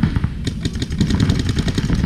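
Paintball markers firing rapid strings of shots, heard as fast clicking, over a heavy low rumble.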